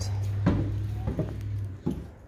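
Footsteps going down a short flight of steps: a few separate knocks over a steady low hum that stops near the end.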